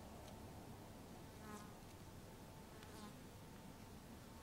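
Near silence, with the faint buzz of a passing flying insect, briefly about one and a half seconds in and again near three seconds.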